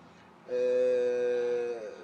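A man's drawn-out hesitation sound, a held "ehhh" on one steady pitch, starting about half a second in and trailing off slightly downward before he goes on speaking.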